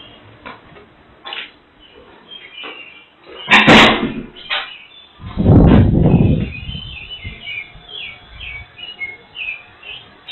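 Handling knocks and rustle from a vane anemometer as it is carried and lifted to a ceiling supply vent, followed about five seconds in by a burst of low rumbling noise that then settles lower, like air blowing on the microphone. Short, faint high chirps come in over the last few seconds.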